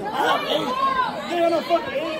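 Teenagers talking over one another in a busy chatter; only voices are heard.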